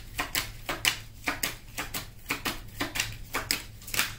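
A deck of tarot cards being shuffled by hand: a quick, steady run of card slaps and clicks, about four or five a second.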